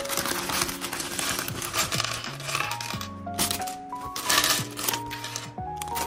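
Plastic Lego bricks clattering and clinking onto a wooden tabletop as a plastic bag of pieces is opened and shaken out, the bag crinkling, over background music with a melody and bass line.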